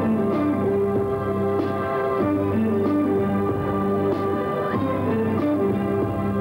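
Live band playing the instrumental introduction to a romantic song: held chords that change every second or so, with no voice yet.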